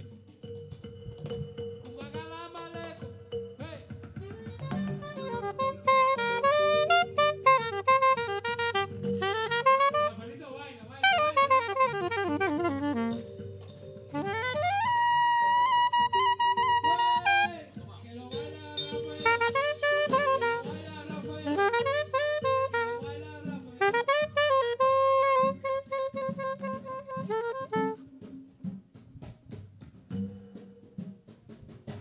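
Saxophone improvising a slow, jazz-like melody with runs up and down and one long held high note in the middle, over sustained low keyboard chords; the playing stops near the end.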